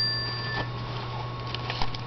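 Faint clicks and light rustling of a calendar in plastic page sleeves being handled, over a steady low hum. A thin, high ringing tone fades out in the first half-second.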